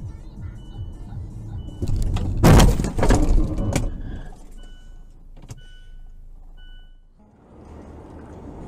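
Car collision recorded from inside the car by a dashcam: a loud crash of impact, several sharp hits and crunching in about a second, starting about two and a half seconds in. Short regular beeps sound before and after the impact.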